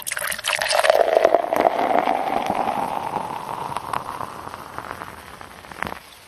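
Beer being poured into a glass, the pouring note climbing steadily in pitch as the glass fills, with many small clicks, loudest at the start and fading out near the end.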